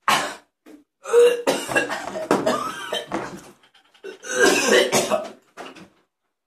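A man coughing and clearing his throat hard in several fits, his mouth burning from a very hot chilli. A short cough at the start, a longer spluttering fit about a second in, and another fit near the end.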